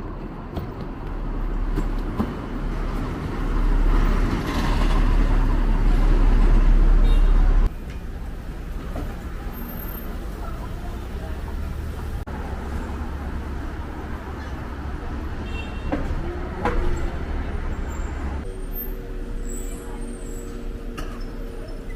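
Street traffic: a low rumble of a road vehicle close by that grows louder for several seconds, then cuts off abruptly about eight seconds in, giving way to quieter pedestrian-street background noise.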